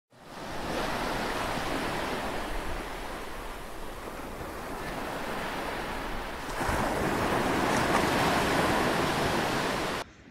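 Ocean surf washing, a steady rush of breaking waves that fades in at the start and swells louder about two-thirds of the way through.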